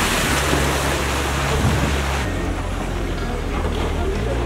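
Rushing hiss of water spray as a cable-towed wakeboard carves hard across the lake, cutting off abruptly a little over two seconds in. Steady low notes of background music run beneath.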